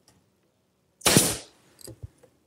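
Brad nailer firing once about a second in, driving a brad through a turned poplar collar into a table leg: one sharp shot trailing off over about half a second, with a couple of faint clicks near the end.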